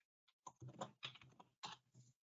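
Faint typing on a computer keyboard: a few quiet key clicks from about half a second in until near the end.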